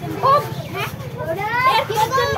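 Young voices talking and chattering close by, over a steady low hum.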